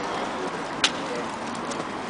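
Street ambience around a waiting crowd: a steady background hum with faint voices, broken by a single sharp click just under a second in.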